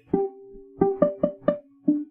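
Ukulele plucked in a simple bass-line pattern of single notes on the root: one note at the start, a quick run of four about a second in and another near the end, each ringing on between plucks.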